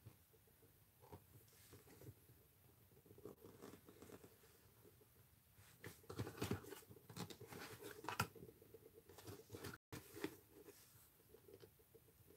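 Lino-cutter gouge carving a rubber stamp: faint, irregular short scraping and cutting strokes as the blade digs out material, busier about six to eight seconds in.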